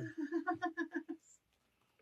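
Soft laughter: a quick run of pitched 'ha-ha' syllables that fades out about a second in.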